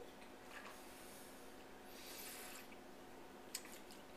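Quiet room with faint sounds of wine being sipped and swallowed from a glass: a soft breathy hiss about two seconds in, then a couple of light clicks near the end as the wine glass is set down on the table.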